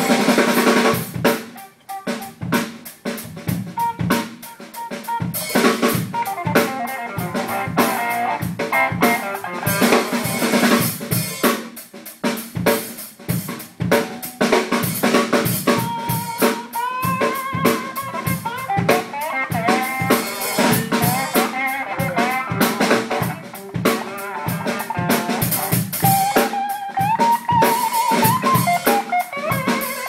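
A live rock duo of guitar and drum kit playing. About a second in, the music drops away briefly, then the drums build back in with steady snare and bass-drum hits. Guitar lead lines that slide in pitch come in around the middle and again near the end.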